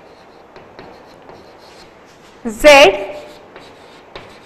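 Chalk writing on a blackboard: a run of short, faint scratching strokes as words are written.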